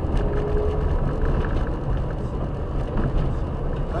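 Car on the move: a steady low rumble of engine and road noise, with a brief steady tone in the first second.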